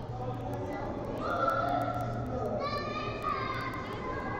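Raised voices calling and shouting in a large echoing hall, with one long high-pitched shout in the second half, over a steady low hum.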